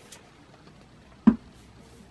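A single short, sharp tap or knock about a second in, over faint room hiss.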